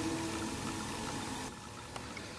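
Quiet room tone: a steady hiss with a faint, even hum, which drops a little about one and a half seconds in.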